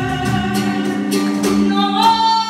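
A woman singing flamenco-style, holding long notes over guitar accompaniment.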